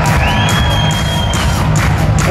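Heavy metal band playing live, with distorted guitars, bass and drums, while the crowd cheers. A thin, high, steady note sounds for about a second near the start.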